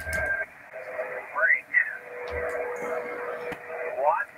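Single-sideband amateur radio voice net heard through a receiver: static hiss cut off above the voice band, with fragments of a distant operator's voice. Partway through, a steady low whistle of a heterodyne tone comes in and runs on.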